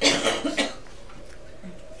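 A person coughing, two quick coughs within the first second.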